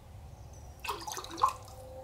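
Liquid glaze gurgling as a bisque tumbler is pushed down into a close-fitting jug of glaze and displaces it up the sides, with a few short gurgles about a second in.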